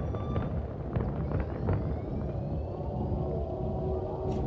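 Fireworks going off outside, heard muffled through the windows: a steady low rumble with a few sharp pops and crackles about a second in.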